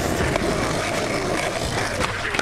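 Skateboard wheels rolling on rough asphalt, a steady grinding rumble.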